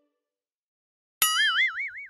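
About a second of near silence, then a cartoon 'boing' sound effect: a sudden springy tone whose pitch wobbles up and down about five times a second as it fades.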